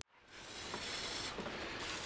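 Aerosol can of lubricant spraying into the open cylinders of a bare engine block: a faint, steady hiss that starts about a third of a second in.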